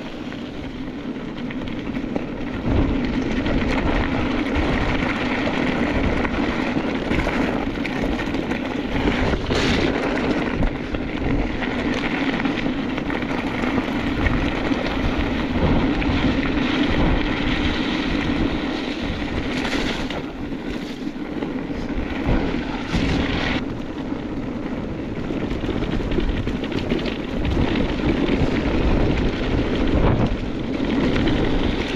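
Wind buffeting the microphone over the rumble of mountain-bike tyres rolling on a gravel track, with a steady low hum and a few brief clatters from bumps.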